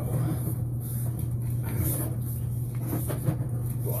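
Sewer inspection camera being pulled back through the pipe on its push cable, with scattered knocks and rubbing over a steady low hum.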